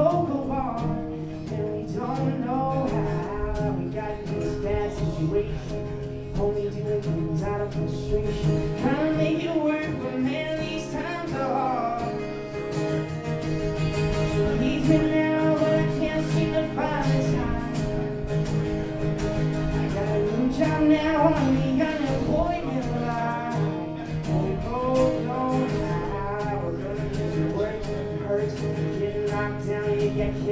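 Two acoustic guitars played together with a man singing over them.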